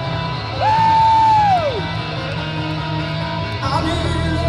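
Live rock band playing, with electric bass guitar underneath. About half a second in, a long high note comes in, holds for about a second, then slides down and fades.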